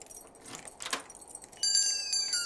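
Light metallic jingling and clinking, then, about a second and a half in, a sudden bright chime of several ringing tones, some sliding down in pitch.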